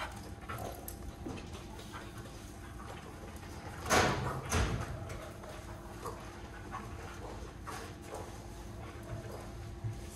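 A doodle dog moving about on a hard floor while being played with, with scattered light taps and two loud short scuffling noises about four seconds in.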